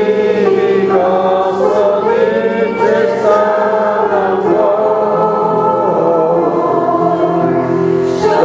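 A group of voices singing a slow hymn together, holding each note for about a second before stepping to the next.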